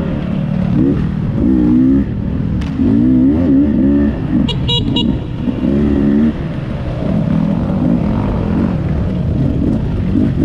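Dirt bike engine revving up and down over and over as the rider opens and closes the throttle. A few short high chirps come about halfway through.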